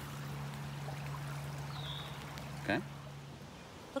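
Steady rush of creek water running high after heavy rain, with a low steady hum underneath that stops about three and a half seconds in.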